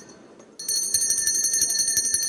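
Electric bell ringing steadily with a fast, even rattle of strikes, starting about half a second in: the bell that calls the assembly to order as the session is opened.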